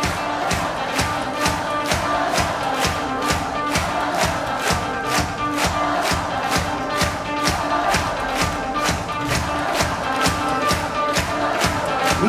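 A live rock band playing an instrumental passage: drums hitting a steady, fast beat of about three hits a second under electric guitars, with the crowd cheering along.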